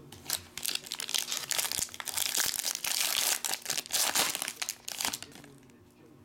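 A foil trading-card pack wrapper being torn open and crinkled in the hands, a dense crackling that dies down near the end.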